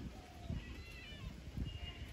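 Faint high, wavering animal calls in the background, a few in the first half, over an irregular low rumble of wind on the microphone.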